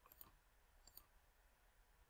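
Near silence with two faint computer mouse clicks, about a second apart.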